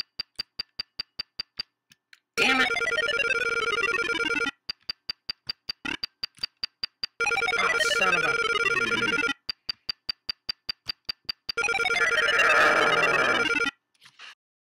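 Electronic intro jingle of 8-bit-computer-style beeps: runs of short, rapid beeps at one pitch alternate three times with two-second stretches of held tones and falling pitch sweeps. The jingle cuts off just before the end.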